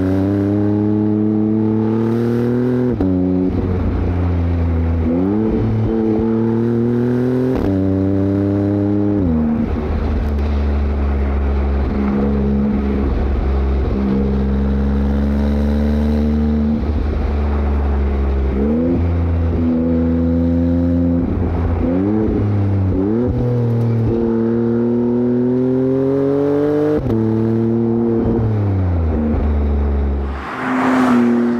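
Maserati MC20's twin-turbo V6 under hard acceleration, heard from outside at the rear of the car: the revs climb steadily and drop sharply at each gearshift, several times over. About two thirds of the way through come a few quick rises and drops in quick succession before it pulls steadily again.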